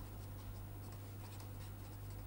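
Felt-tip marker scratching faintly across paper as words are written, over a steady low hum.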